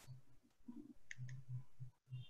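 A quiet pause on a video-call audio line with two short, faint clicks a little after a second in.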